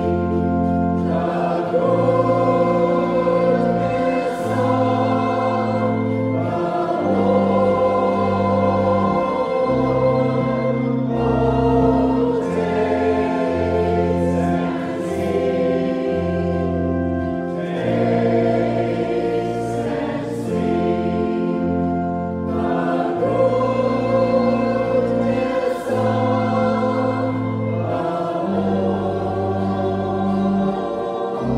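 A slow sacred hymn sung by a choir, over sustained organ chords that change every second or two.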